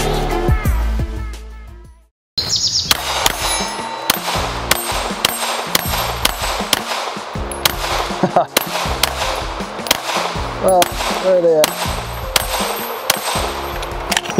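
Intro music fades out to a brief silence, then a Walther Q5 Match 9 mm pistol is fired in a fast string of shots at steel targets, with the steel ringing on hits. The shooting is faster than he means it to be.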